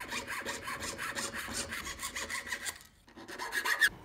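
A jeweller's saw with a very fine blade cutting thin silver sheet in rapid, even strokes. The sawing stops about three-quarters of the way through, followed by a few short sharp sounds near the end.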